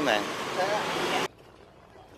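Roadside traffic noise, an even rush of passing vehicles, under the last word of a man's speech; it cuts off abruptly about a second in, leaving only faint background.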